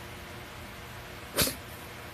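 A house cat makes one short, sharp sound about three quarters of the way through, over quiet room tone.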